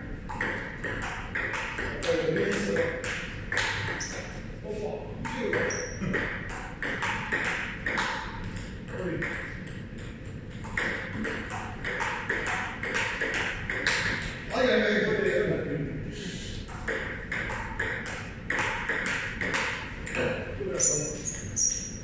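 Table tennis ball clicking back and forth between paddles and table in a long rally, a steady run of sharp, quick ticks several times a second.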